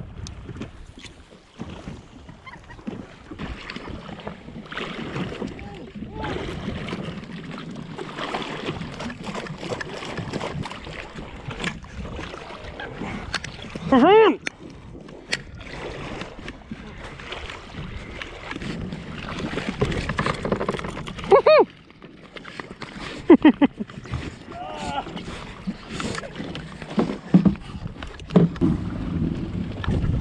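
Water lapping and sloshing against a drifting jet ski, with wind on the microphone. A voice calls out briefly about halfway through and twice more later on.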